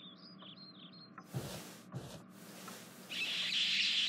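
Birds chirping in a quick series of short, high, falling calls during the first second, then two brief rushes of noise, and a louder steady hiss near the end.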